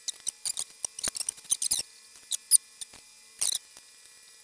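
Irregular computer-mouse button clicks, short and sharp, some in quick pairs and clusters.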